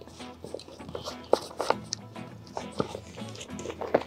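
Quiet background music under a few short crackles from the plastic of a waterproof roll-top bag as its top is rolled up by hand.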